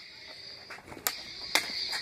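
Plastic toy lightsaber blades clacking together twice, about half a second apart, about a second in, over a steady high-pitched hum.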